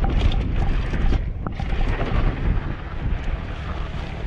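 Wind noise buffeting the microphone while a downhill mountain bike rolls fast over a rough, rocky dirt trail, with a steady rumble of tyres on dirt and frequent short rattles and knocks from the bike over the bumps.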